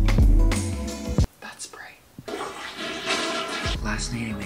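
Background music with a heavy bass beat cuts off about a second in. After a short pause comes a rush of running water, about a second and a half long.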